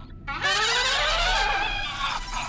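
Cartoon trumpet blast: a loud brassy note that starts about half a second in and slides upward in pitch for about a second and a half.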